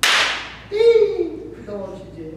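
A single sharp hand clap from a Tibetan monk's debate gesture, trailing off briefly in the room. About three-quarters of a second later comes his long shouted call, falling in pitch.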